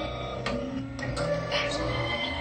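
Electronic sound-art music assembled from sampled urban noises such as reversing trucks, garbage trucks and rubber chairs: sharp clicks recur over sustained high tones and a low bass.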